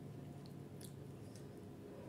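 Faint wet eating sounds as spicy instant noodles are lifted on a fork from the bowl toward the mouth: a few soft, squishy clicks over a steady low hum.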